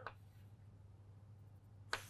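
Near silence: faint room tone with a steady low hum, and one brief faint click just before the end.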